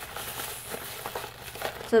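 Plastic bubble wrap crinkling as it is handled, a continuous rustle with a few faint ticks.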